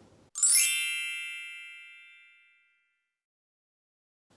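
A bright chime sound effect about a third of a second in: a quick rising shimmer, then several tones ringing together and fading out over about two seconds.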